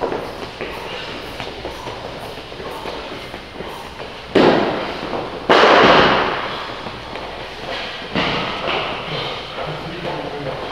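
Heavy weight plates thudding onto a rubber gym floor: two loud thuds about four and a half and five and a half seconds in, the second ringing on for about a second, and a softer one near eight seconds.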